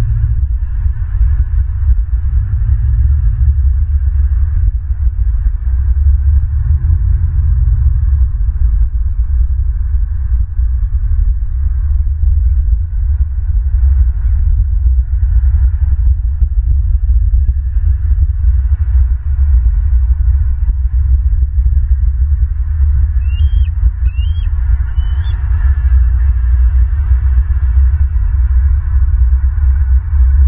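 Steady low rumble of wind buffeting an outdoor microphone, with three short, upward-hooked bird chirps about three quarters of the way in.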